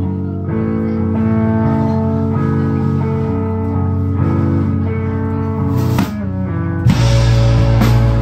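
Live rock band opening a song: electric guitars and bass ring out sustained chords over sparse drums. About six seconds in there is a single drum hit, and just before the end the full band comes in loud with drums and crashing cymbals.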